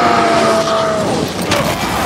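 Film fight sound mix: a loud held tone that slides slowly down over about a second, then a crashing impact about a second and a half in as Hulk lands on Thor.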